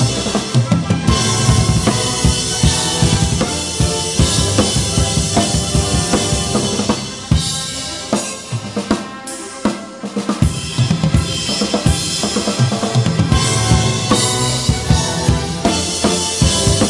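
Rock drum kit played hard and fast, with kick drum, snare and crashes on Paiste cymbals, over an orchestral backing track of a wedding march. The drumming thins out for a couple of seconds just past the middle, then drives back in.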